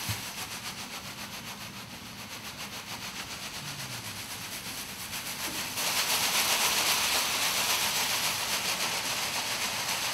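Gold metallic foil pom-poms being shaken, a dense crinkling rustle with a fast flicker, louder from about six seconds in.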